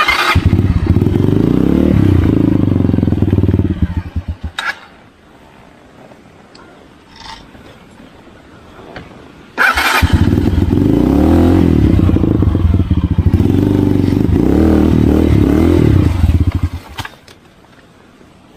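Motorcycle engine running, then dying away with a stutter about four seconds in. After several quiet seconds it starts again with a sudden burst, revs unevenly, and shuts off about a second before the end.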